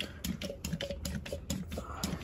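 Irregular light clicks and taps, several a second, from small shifter-rebuild parts being handled, over a low steady hum.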